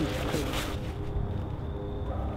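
A man's voice trailing off in the first moments, then a low, steady outdoor background rumble with no distinct event.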